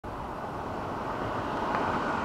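Road traffic approaching on a highway: a steady rush of tyre and engine noise from oncoming cars that grows slowly louder as they come nearer.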